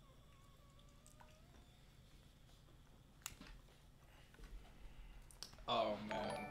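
Glass bong filled with soup being hit: a faint whistle rising in pitch over the first two seconds, then a few scattered clicks.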